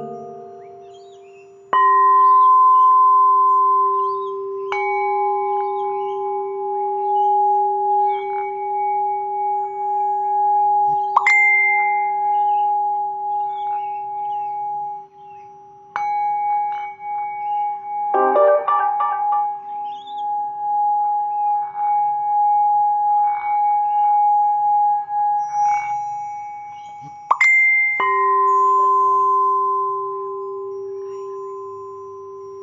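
Singing bowls struck with a mallet about six times, each strike leaving a long, steady ringing tone of its own pitch that overlaps the others and wavers in loudness. About eighteen seconds in, a quick cluster of brighter chime-like notes sounds briefly.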